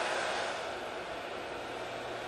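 Steady ballpark ambience on the broadcast mics: an even wash of noise with a faint low hum and no distinct events.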